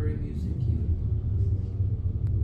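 A steady low rumble, with a faint voice in it about the first half-second.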